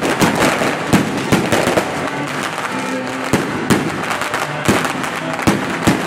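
Aerial fireworks bursting overhead: a dense, continuous crackle broken by about ten sharp bangs at irregular intervals of roughly half a second to a second.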